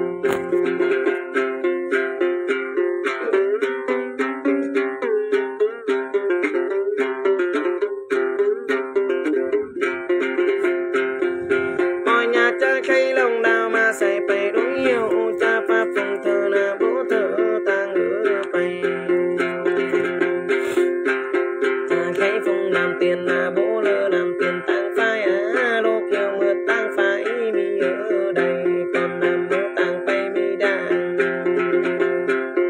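Đàn tính, the long-necked gourd lute of Tày–Nùng Then singing, plucked in a steady, evenly repeating pattern of bright notes over a sustained low drone.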